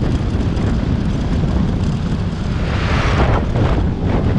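Wind rushing and buffeting over the microphone of a moving vehicle, a steady low rumble with a louder rushing swell about three seconds in.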